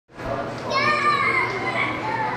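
Crowd chatter echoing in a large hall, with a child's high-pitched voice rising above it for about a second.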